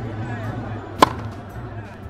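A single sharp hit, like a tennis racket striking the ball, about a second in. It sounds over faint background music.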